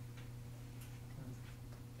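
Quiet classroom room tone: a steady low electrical hum with a few faint, irregular ticks.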